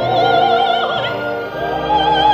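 Operatic soprano holding high sustained notes with a wide vibrato over an orchestra, moving up to a higher note a little past halfway.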